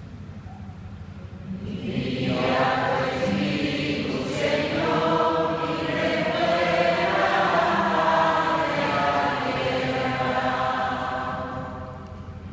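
A group of voices singing together in a reverberant church, starting about two seconds in and fading near the end: the sung refrain of the responsorial psalm after the spoken verse.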